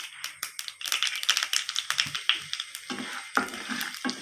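Mustard seeds spluttering in hot oil in a non-stick kadai: a dense, irregular crackle of small pops. Near the end there is a thicker sizzle as curry leaves go into the oil.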